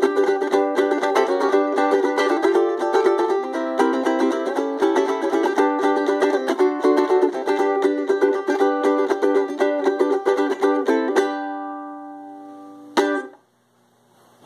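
Ukulele strummed briskly through chord changes, ending about eleven seconds in on a final chord that rings out and fades. Near the end a sharp knock cuts the ringing off.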